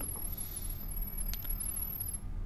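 Smartphone speaker playing a faint, very high-pitched pulsing data tone: the Imou Life app's sound-wave pairing signal, which sends the Wi-Fi details to an Imou Ranger 2 camera during setup.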